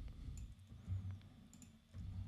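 Faint computer keyboard and mouse clicks, a few scattered clicks, over low room noise.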